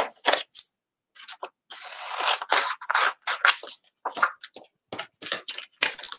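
Cardstock and clear plastic cutting plates being handled on a tabletop: irregular rustling, scraping and light clicks, with a longer stretch of rustling about two seconds in.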